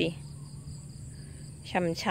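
A steady, high-pitched trilling of insects that runs on without a break.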